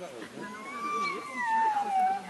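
A dog whining: one long, high-pitched whine that rises slightly and then falls away, with people talking faintly in the background.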